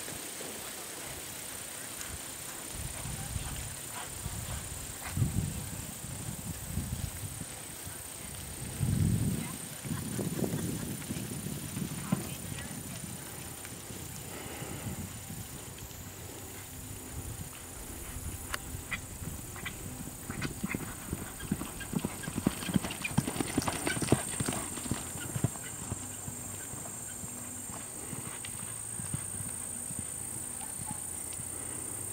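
Hoofbeats of a horse loping on soft arena dirt: dull thuds coming in uneven runs, strongest about a third of the way in and again past the middle.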